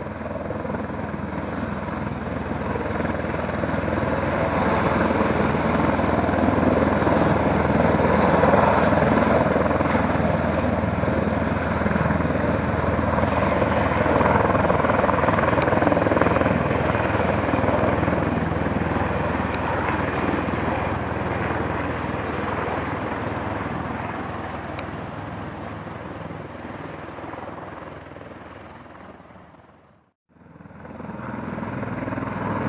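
Sikorsky VH-3D Sea King helicopter flying overhead: a steady rotor and turbine noise that swells over the first several seconds, holds loud through the middle, then slowly fades as it flies away.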